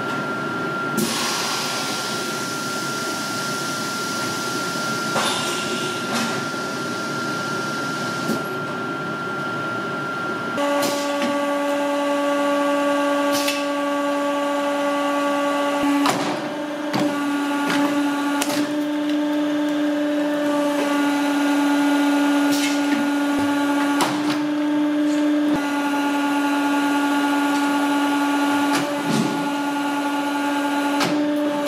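A brush working adhesive onto a boot's sheepskin lining, a soft rushing sound over a faint steady hum. About ten seconds in it gives way to a hydraulic shoe-lasting machine running with a loud steady hum, broken by several sharp clicks and knocks as a leather boot upper is worked in it.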